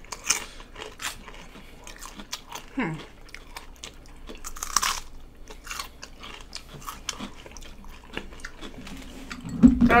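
Close-up crunching and chewing of a raw jalapeño stuffed with cream cheese and rolled tortilla chips: scattered crisp crunches, with two louder ones shortly after the start and about five seconds in.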